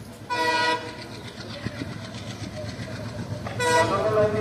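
Indian Railways locomotive horn sounding two short blasts about three seconds apart, from an approaching train, over a low rumble that grows louder.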